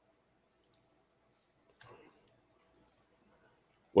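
A few faint, sparse clicks from a computer mouse while navigating a web page, with a soft brief sound about two seconds in and a faint steady hum underneath.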